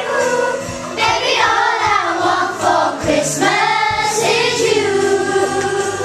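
A group of young schoolgirls singing a song together, holding a longer note in the second half.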